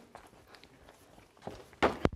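Footsteps of a person walking and then climbing wooden stage steps: soft, scattered footfalls, with two or three louder footfalls near the end.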